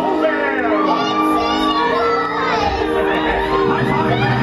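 Stage-show music with steady held tones, over an audience with children shouting and calling out.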